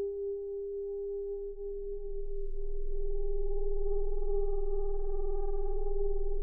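Mutable Instruments modular synthesizer holding sustained sine-like tones: a low drone with an octave above it, joined by higher tones about two seconds in as the sound swells and takes on a slight rapid pulsing.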